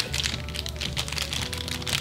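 Plastic snack packet crinkling in the hands as it is pulled out and handled: a run of irregular crackles. Background music plays underneath.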